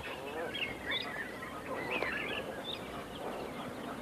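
Faint wildlife calls: scattered short, high chirps and quick gliding whistles over a low hiss.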